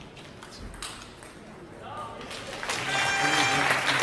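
Table tennis rally: the ball clicks sharply off bats and table. About three seconds in, a hall crowd breaks into loud applause and cheering as the point is won.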